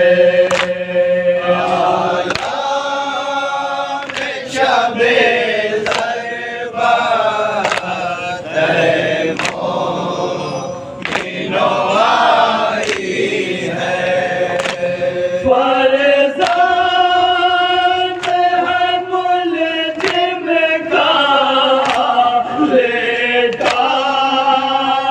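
A noha, a Shia mourning lament, chanted by a group of men in unison, with sharp chest-beating slaps (matam) about once a second keeping the beat.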